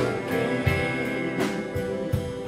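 Live band playing an instrumental passage in a country style: electric and acoustic guitars over a steady beat, with no singing.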